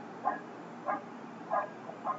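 An animal's short high calls, three of them, evenly spaced about two-thirds of a second apart.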